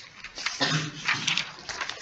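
A person's voice making a short vocal sound, starting about half a second in, with no words made out.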